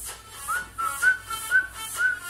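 A whistled tune, a single clear note that rises about half a second in and then steps up and down in short notes, over dance music with a steady beat.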